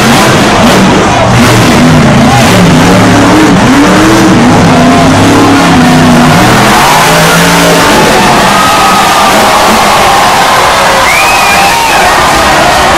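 Monster truck engine revving up and down repeatedly as the truck drives the course, loud and distorted, over constant crowd and stadium noise. Later the engine note drops away and the crowd's whoops and yells rise near the end.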